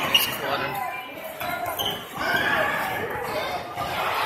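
Players and spectators talking over one another in an echoing gymnasium, with a short, sharp high chirp just after the start.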